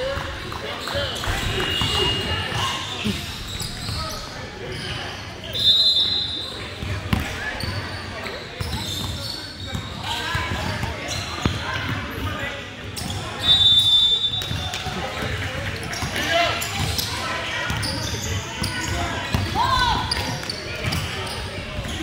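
Basketball game in an echoing gym: voices of players and onlookers, ball bounces and shoe noise on the hardwood, with two short, high referee whistle blasts, about six seconds in and again about fourteen seconds in.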